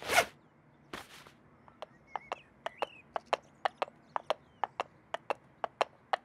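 A quick whoosh, then a steady run of light sharp clicks, about three a second, with a few faint chirps among them.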